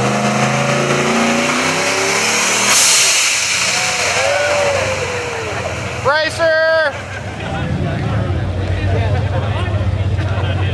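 Single-turbo Pontiac Trans Am engine running, varying in pitch over the first two seconds and then settling to a steady idle, with a brief hiss about three seconds in. Crowd voices around it, with a loud shout about six seconds in.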